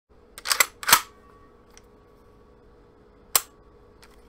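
Escort BTS12 bullpup 12-gauge shotgun's action being worked by hand: a quick series of sharp metallic clacks within the first second, then one more sharp click near the end.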